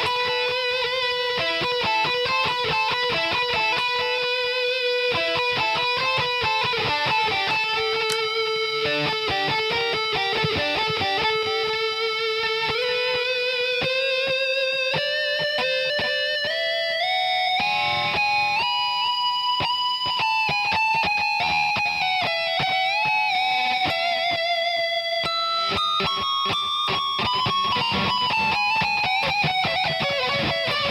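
LTD Viper-200FM electric guitar played with a high-gain tone: fast single-note lead lines that climb steadily in pitch through the middle, then work back down near the end.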